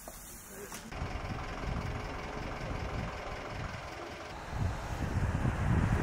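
Wind buffeting the microphone outdoors, a gusty low rumble that starts about a second in and gets louder near the end, with faint voices under it.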